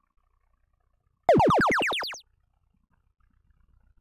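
Arena power-up cue from a FIRST Power Up field: a sudden, loud run of about eight quick rising electronic sweeps that fades out within a second. It signals that an alliance has just played a power-up from its vault.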